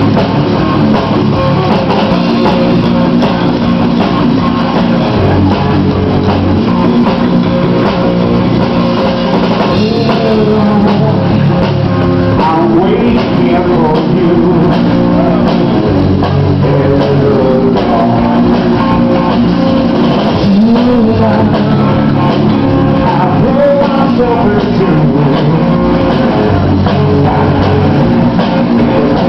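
Live rock band playing loud and steady: electric guitar, bass and drum kit, with a male lead singer's voice through the PA.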